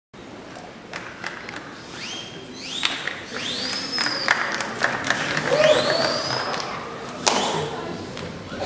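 Audience in a large hall before the act: several high whistles that rise and level off, a short whoop, and scattered claps, with a sharp thump about seven seconds in.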